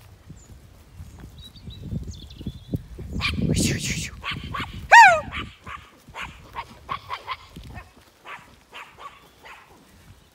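A small herding dog barking: a run of short, sharp barks through the middle, the loudest a high yelp that drops in pitch about five seconds in.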